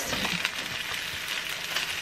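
Diced vegetables and oil sizzling gently in a large skillet on high heat while chilled cooked rice is scraped out of a plastic container into the pan, with faint scrapes and ticks from a silicone spatula.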